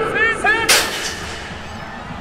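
A single sudden loud bang about two-thirds of a second in, with a hissing tail that fades away over about a second.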